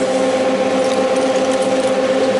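Electric radiator cooling fan running steadily under the DX-150's PWM control at about 40 percent speed: a steady motor whine over the rush of air.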